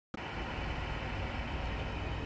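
A steady low rumble of outdoor background noise, starting right after a brief dropout at the very start.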